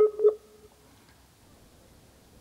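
A brief, clipped bit of voice in the first half second, then near silence as the Skype call's audio drops out.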